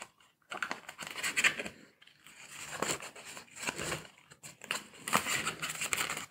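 Cardboard and paper packaging of a Samsung Galaxy S22 Ultra box being handled as the SIM ejection tool and charging cable are taken out: irregular rustles, scrapes and small clicks.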